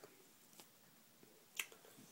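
Near silence with one sharp click about one and a half seconds in, and a fainter click before it.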